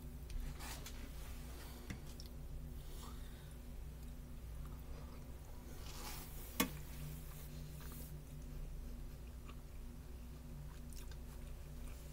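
A person chewing a mouthful of macaroni and ground-beef skillet dinner, with faint soft clicks and one sharp click about six and a half seconds in, over a steady low hum.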